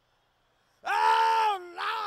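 A man's voice, a comedian acting out a grieving relative, lets out a loud, drawn-out wail about a second in: the note is held and then drops. Shorter wails falling in pitch follow near the end.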